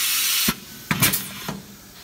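Compressed air hissing from a pneumatic bag-on-valve aerosol filling machine, cutting off sharply about half a second in. A few short clicks follow.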